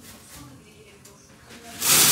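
Quiet room tone, then near the end a plastic shopping bag suddenly rustles loudly as it is handled.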